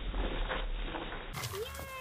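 Slowed-down slow-motion audio, a dull low rumble with muffled thuds, that cuts about two-thirds of the way in to normal-speed sound and a person's drawn-out voice rising and falling in pitch.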